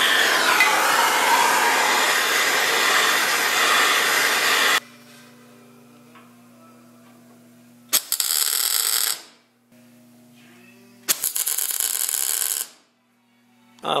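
A Bernzomatic hand torch burning with a steady hiss as it preheats the metal, cut off suddenly about five seconds in. Then two short welding-arc tack welds, each a crackling buzz of about a second and a half, a few seconds apart, tacking bracket tabs on.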